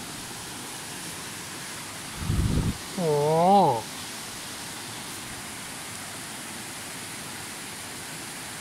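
Shallow mountain stream running over stones, a steady rushing. About two seconds in, a brief low rumble on the microphone, followed straight after by a man's short wordless exclamation whose pitch rises and falls.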